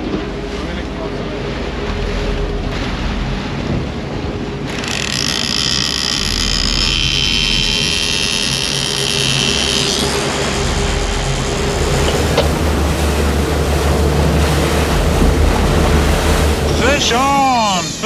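Twin Honda 90 four-stroke outboards running under way, with water rushing in the wake and wind on the microphone. About five seconds in, a high-pitched screaming whine sets in for about five seconds: a fishing reel's drag giving line to a hooked tuna.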